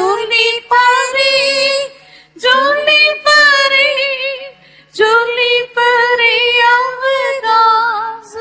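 A female voice singing a hymn solo in long held phrases, with short breaths about two seconds in and again just before the five-second mark.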